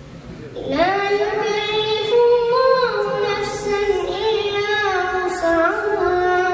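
A boy reciting the Quran in a melodic, chanted style: after a short pause for breath, his voice rises into one long, held phrase about a second in, with ornamented turns in pitch.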